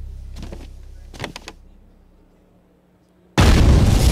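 Film soundtrack in which the sound fades away to near quiet, then a sudden loud explosion breaks in a little over three seconds in, the blast carrying on loud.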